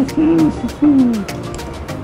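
A man's two short closed-mouth "mmm" sounds of enjoyment while tasting food, the second falling in pitch, over background music with a light regular tick.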